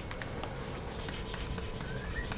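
Pen scratching on paper in a run of quick, short strokes, starting about a second in.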